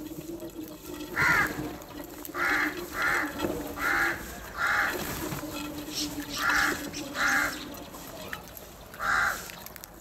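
House crows cawing at a feeding bowl: about eight short caws at irregular intervals, each lasting a fraction of a second.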